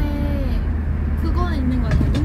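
Steady low rumble of road and engine noise inside a moving car's cabin, under talk.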